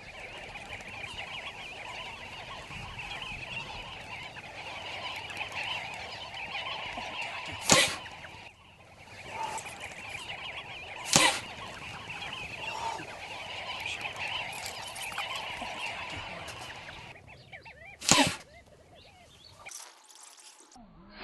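A flock of sandgrouse calling steadily at a waterhole, broken by three sharp pops of blowgun shots, about 8, 11 and 18 seconds in; the calling thins out near the end.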